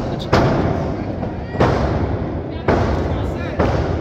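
Four sharp, loud impacts about a second apart, each echoing briefly in the hall: wrestlers' bodies hitting the mat of a wrestling ring.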